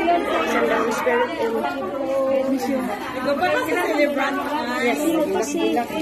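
Chatter of several people talking at once, voices overlapping.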